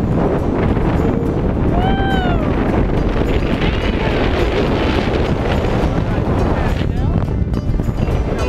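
Wind buffeting the microphone of a wrist-worn camera during a tandem parachute descent under canopy, a steady loud rush, with music underneath. A short high sound rises and falls about two seconds in.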